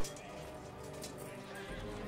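Quiet background soundtrack of horses, with hooves clip-clopping and neighing, mixed under soft music.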